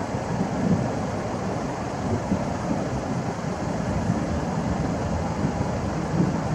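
Steady, even rumbling background noise with no distinct events; no bird call is heard.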